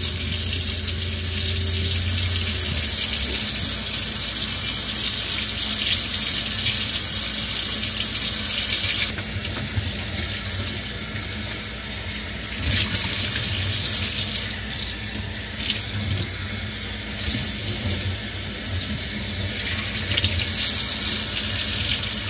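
Kitchen faucet running into a stainless steel sink, the stream splashing through wet hair as it is rinsed by hand. About nine seconds in the rush gets quieter and more uneven as hair and hands break the stream.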